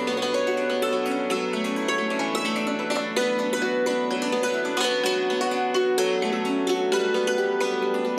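Hammered dulcimer played with hammers: a fast, even stream of struck metal-string notes that ring on and overlap.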